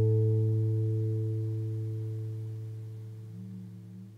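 Background music: a single strummed acoustic guitar chord ringing out and slowly dying away.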